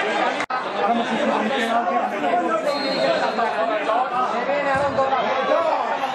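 Several people talking at once in overlapping, indistinct chatter, with a brief break about half a second in.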